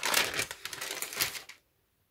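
A sheet of tracing paper crinkling and rustling as it is handled and set aside. It stops suddenly about one and a half seconds in.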